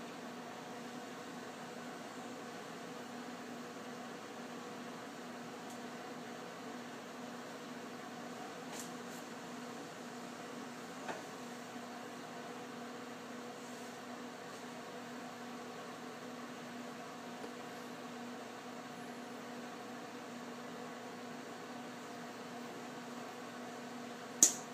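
Steady room hum with a faint held low tone, unchanging throughout, and a couple of faint brief clicks about nine and eleven seconds in.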